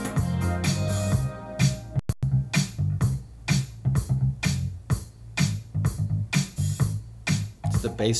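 Electronic dance music track played back, with a steady drum-machine beat, synth bass and keyboard parts. The sound cuts out for an instant about two seconds in.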